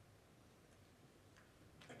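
Near silence: room tone in a brief pause between spoken sentences.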